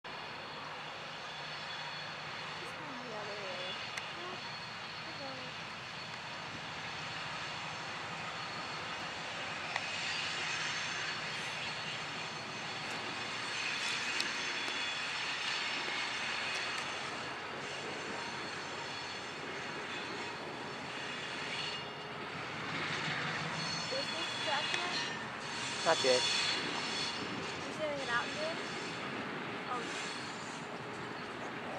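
Diesel switcher locomotive engine running steadily as the locomotive moves along the track, with a continuous drone that swells and eases a little but never stops.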